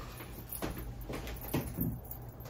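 Faint handling noise: a few light knocks and rustles of objects being moved.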